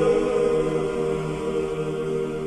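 Romanian Orthodox church chant: voices holding long, steady notes over a low sustained tone, with no words sung in these seconds.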